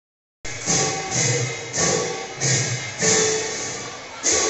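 Live Assamese devotional music on khol barrel drums and large hand cymbals, cutting in about half a second in. The cymbals clash in a steady beat about every two-thirds of a second over low drum strokes and a held note.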